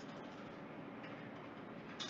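Faint steady hiss of background noise on a video-call line, with a soft click at the start.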